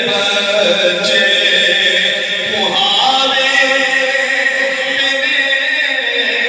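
A man's solo voice chanting an Urdu naat through a microphone, drawing out long held notes; about two and a half seconds in the voice slides up to a higher note.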